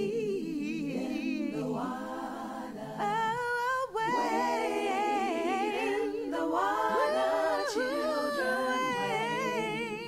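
Voices singing a cappella in harmony with a wavering vibrato, without instruments.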